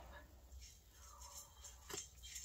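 Near silence with faint sips of hot herbal tea from a ceramic mug, and a brief soft tick near the end.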